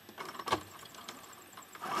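A few handling clicks and knocks at a computerized sewing machine, the sharpest about half a second in, then the machine's motor starts up and runs steadily, stitching, just before the end.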